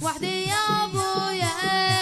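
Boys' voices chanting an Arabic latmiya (Shia mourning chant) in long held, wavering notes over a regular low beat of about two to three strokes a second.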